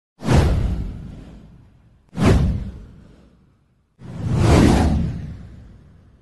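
Three whoosh sound effects about two seconds apart. The first two hit sharply and fade away. The third swells up more slowly, then fades out.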